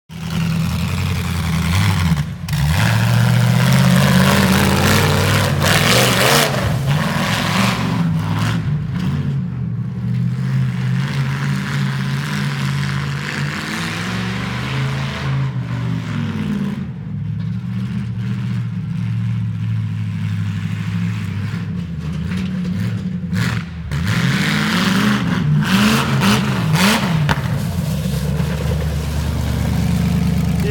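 Demolition derby car's engine running and revving as it is driven, rising and falling in pitch several times, with two brief drops in level.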